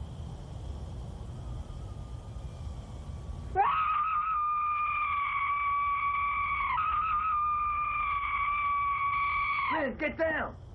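A woman screaming: two long, high screams held at an even pitch, the first starting about three and a half seconds in and the second following after a brief break, falling away near the end. Before the screams there is only a low steady rumble.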